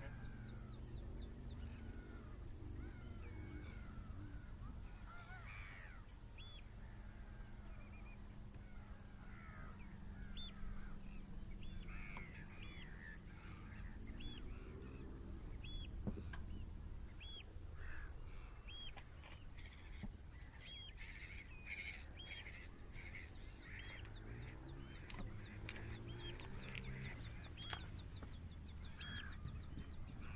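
Many gulls and other shorebirds calling, with short high piping notes repeating about once a second. A rapid high trill comes in near the end, and a low steady hum lies underneath for the first ten seconds.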